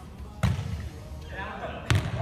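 A volleyball being hit in a gym: one sharp smack about half a second in, then a louder one near the end, with a voice between them.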